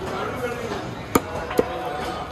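Heavy knife chopping through a bighead carp into a wooden log block: two sharp chops about a second in, half a second apart, over background voices.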